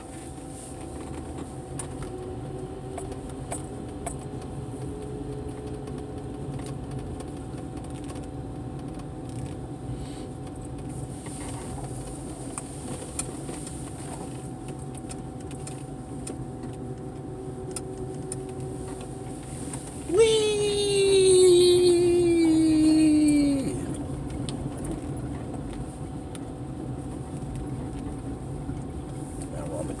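A car driving down a parking-garage ramp, heard from inside the cabin as a steady low engine and road hum. About two-thirds of the way through, the tyres give a loud squeal on the smooth concrete floor that lasts about three and a half seconds, falling in pitch as it goes.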